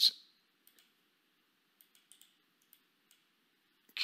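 A few faint, scattered computer mouse clicks, spaced irregularly across a few seconds.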